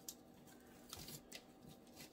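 Near silence with faint rustling of artificial flower stems and foliage being pushed into a floral arrangement, with a few soft ticks about a second in.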